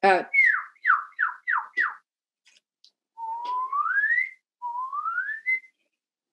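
A person whistling an imitation of a northern cardinal's song: a quick run of about five down-slurred notes, then, after a pause, two long rising whistles.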